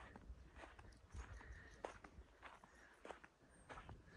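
Faint footsteps through pasture grass, soft irregular steps about twice a second, over a low rumble.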